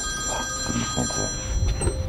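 A bell-like ringing: several clear tones held together, most dying away about one and a half seconds in, over a low rumble.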